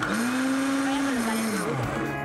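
Countertop electric blender pulsed on a thick oat, banana and cocoa batter: the motor spins up right at the start, runs steadily for about a second and a half, then winds down near the end.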